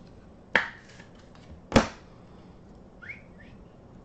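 Trading cards in plastic sleeves and holders handled at a table: two sharp clacks about a second apart, then two faint, short rising squeaks near the end.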